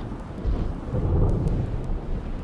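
A deep rumble under a steady hiss, like thunder and rain, swelling in the middle. It is the storm-like opening of a background music track, just before the music itself comes in.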